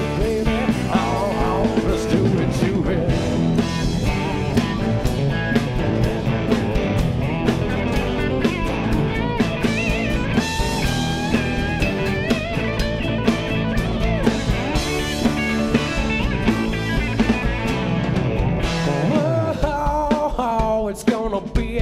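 Live country-rock band playing an instrumental stretch with no lyrics: electric guitars, bass and a drum kit keeping a steady beat, with an electric guitar taking the lead.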